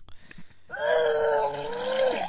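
A person vomiting: a loud, drawn-out, high retching groan starts under a second in, holds for about a second and a half, and slides down in pitch at the end.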